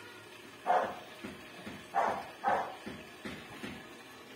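A dog barking: several short barks spaced over a few seconds, the last ones fainter.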